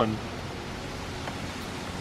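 Steady background hiss of outdoor ambience, with no distinct sound standing out; the end of a spoken word at the very start.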